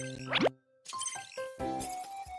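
Cartoon sound effects over children's background music: a quick rising 'bloop' glide about half a second in, then a brief silence. After that, electronic interface tones and light clicking come in as the music carries on.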